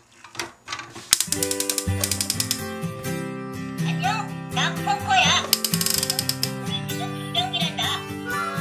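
Plastic toy excavator's boom ratcheting in rapid clicks as it is moved by hand, over music. About halfway through, pressing its light-and-sound buttons sets off warbling electronic sound effects.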